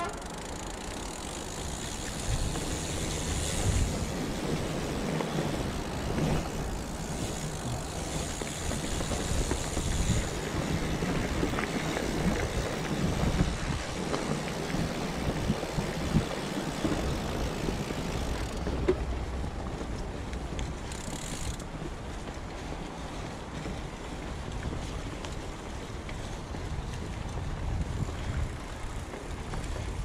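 Fat bike riding over a dry, leaf-covered dirt trail: a continuous rough rush of the wide tyres crunching through leaves and dirt, with bike rattle and some wind on the microphone.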